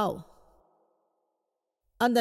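A voice speaking a single word, then near silence for over a second in a pause of the talk.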